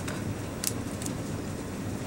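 Steady low background hum with two faint, short clicks near the middle.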